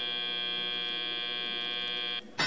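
FIRST Robotics Competition field buzzer sounding one long, steady electronic buzz, marking the end of the autonomous period.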